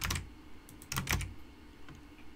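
Typing on a computer keyboard: a few keystrokes at the start, a quick run of them about a second in, and one more near the end.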